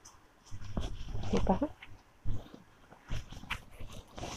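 Silk saree fabric rustling and swishing in irregular bursts as it is unfolded and lifted, with a brief low hum-like sound about a second and a half in.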